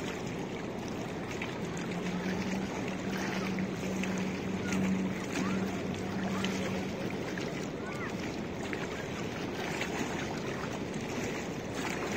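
Small choppy waves lapping against a stone riverbank, with wind buffeting the microphone. A steady low hum runs through the first half and then fades out.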